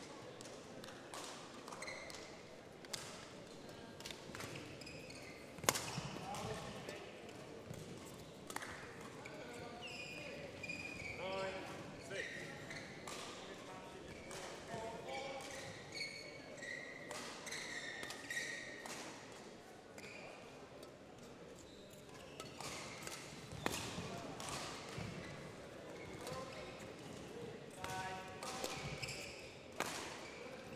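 Badminton shuttlecock being struck by rackets now and then, with short shoe squeaks on the court floor, in a large sports hall. Two of the hits stand out as louder, about a third of the way in and again about three-quarters of the way in.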